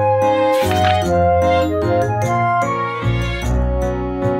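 Light background music with a bass line, with a bright jingling chime flourish about half a second in.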